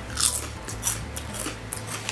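Crunching bites of a white cheddar Ips protein chip being eaten: a run of several short, crisp crunches.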